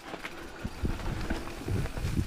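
Rocky Mountain 790 MSL full-suspension mountain bike descending a dirt singletrack: tyres rolling over loose dirt with a steady low rumble and irregular knocks and rattles as the bike hits bumps.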